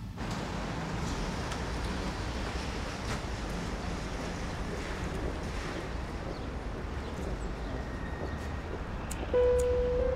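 Steady outdoor ambience, an even hiss of wind and distant street noise. About nine seconds in, a held musical note of the score comes in louder over it.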